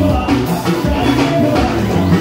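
A live sertanejo band plays loudly, with keyboards over a drum kit keeping a steady beat.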